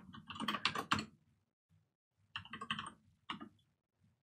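Computer keyboard typing in short bursts of keystrokes: a cluster in the first second, another around two and a half seconds in, and a few more keys near three and a half seconds.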